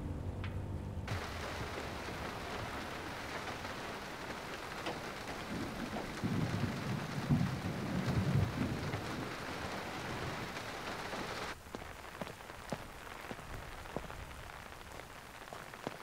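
Steady rain falling, with a low rumble of thunder in the middle. The rain drops to a quieter level about two thirds of the way through.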